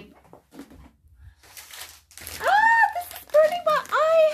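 Faint crinkling of a wet-wipes packet as a wipe is pulled out. About two seconds in, this gives way to a woman's loud wordless pained moans, rising and falling in pitch, as makeup remover stings her eye.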